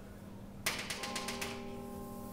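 Chalk tapping on a chalkboard to draw a dotted line: a quick run of sharp taps, about ten a second, starting a little over half a second in, over a steady hum.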